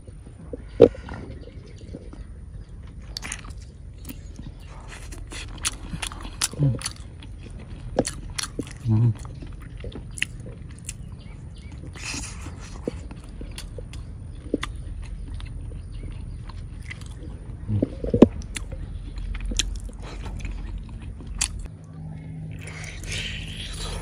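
Close-up mouth sounds of a person chewing and biting into sticky braised pork: wet smacking clicks throughout, with a few short hummed murmurs.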